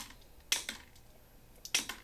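Mosaic nipper biting through scrap clear glass: about four sharp snaps, one at the start, one about half a second in and two close together near the end.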